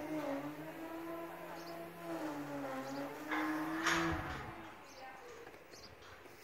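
A steady engine hum, wavering slightly in pitch. A short rush of noise at its loudest about three and a half seconds in, then the hum stops about four seconds in.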